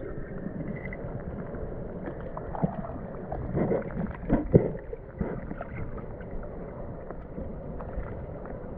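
Muffled, steady rush of creek water heard from underwater, with a cluster of dull knocks and clunks about halfway through.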